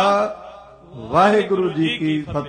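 A man's voice chanting simran in long, drawn-out syllables: one phrase ends just after the start, and after a short pause another begins about a second in.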